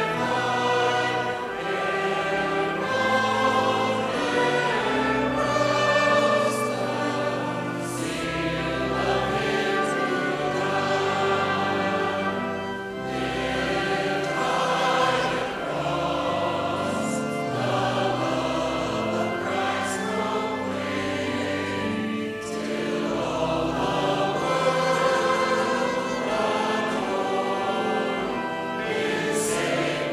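A church congregation singing a hymn together with pipe organ accompaniment, the organ holding long steady bass notes under the voices.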